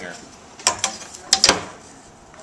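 Steel carpenter's framing square being set and shifted on a wooden stair stringer: a few sharp metal-on-wood clicks and taps, two at about two-thirds of a second in and a quick run of three about a second and a half in.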